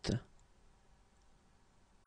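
A short clicking release at the very start, the final 't' sound of the spoken French word 'huit', followed by near silence.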